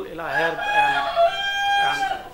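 A long animal call held at a steady pitch, in two parts, starting about half a second in and stopping near the end, over the tail of a man's speech.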